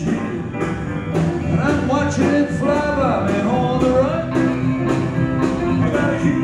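Live country-rock band playing an instrumental break: a lead line with bending, gliding notes over a steady drum beat, bass, rhythm guitar and piano.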